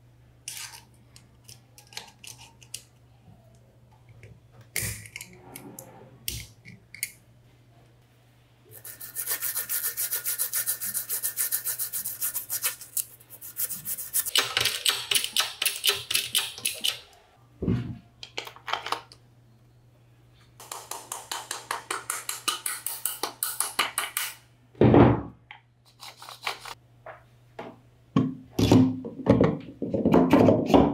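Fast, repeated rubbing or scrubbing strokes on metal motor parts, in three spells of a few seconds each. Between them come scattered clicks and a couple of heavier knocks as metal parts are handled and set down.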